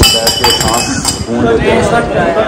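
Drinking glasses clinking, with a short ringing tone in the first second.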